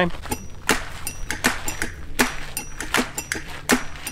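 Footsteps of two people walking on a gravel and dirt path, a steady run of steps about two or three a second, over a low steady rumble.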